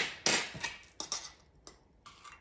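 Metal measuring spoon clicking and scraping against a can of baking powder while spoonfuls are scooped and levelled off: a sharp click at the start, then several short scrapes over the next second and a half.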